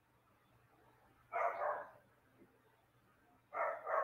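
A dog barking in two short bouts, about two seconds apart, over a faint steady hum.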